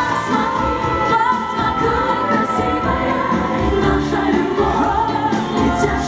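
A women's vocal group singing a pop song in several-part harmony over a band backing with a steady beat.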